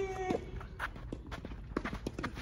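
Tennis rally on an outdoor hard court. A player's grunt from his forehand is held briefly and breaks off in the first half-second. Then come scattered sharp knocks of racket on ball, ball bounces and footsteps.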